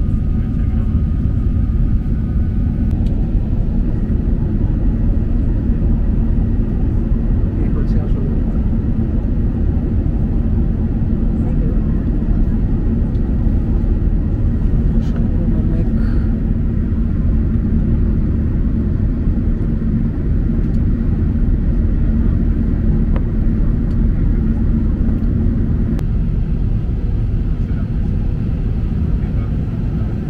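Steady low roar of jet engines and rushing air inside an airliner cabin, with a steady hum underneath, as the plane climbs out of the cloud.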